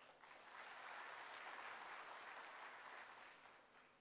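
Faint applause from an audience in a large hall, swelling about half a second in and dying away after about three seconds.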